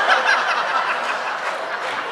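Audience laughing, with a few short voices breaking through near the start.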